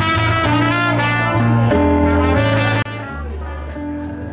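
Trumpet playing a solo line in a Cuban jazz piece over low bass notes. The music drops suddenly in loudness nearly three seconds in.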